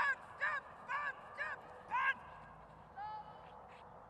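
A run of short, evenly spaced animal calls, about two a second, that stops about two seconds in, followed by one more call near three seconds.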